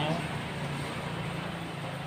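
Steady low background hum and hiss, with the tail of a man's word at the very start.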